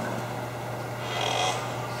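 Room tone in a pause between speech: a steady low hum under faint general room noise.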